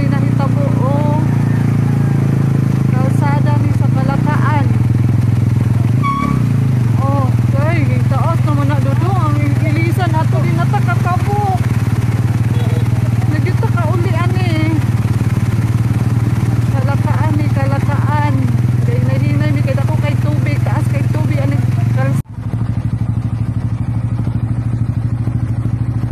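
A vehicle engine running steadily as a low hum, with people's voices talking over it. Near the end the sound cuts off for a moment and picks up again with the same hum.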